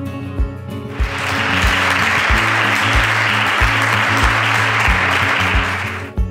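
Audience applause starts about a second in and goes on steadily, over background music with a steady beat.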